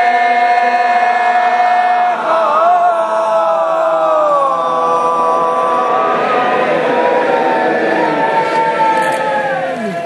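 A group of voices chanting in long held notes that slide down in pitch, several pitches sounding at once.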